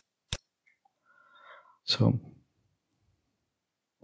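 Two sharp computer mouse clicks in quick succession at the start, selecting items in a list, followed by a single spoken word.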